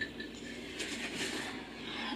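Faint rustling and handling noises from shopping items being moved about, over quiet room tone.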